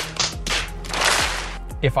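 Several people slapping their hands against their foreheads at once, a burst of smacking noise about a second in, over background music.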